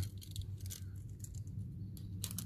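Faint light clicks and rattles of a steel tape measure being handled against a tie rod, over a low steady hum.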